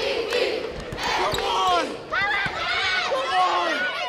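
A basketball bouncing on a hardwood gym floor, with high-pitched shouts and cheers from a crowd of children.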